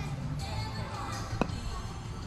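A single sharp click of a putter striking a mini-golf ball, with a brief ring, about one and a half seconds in.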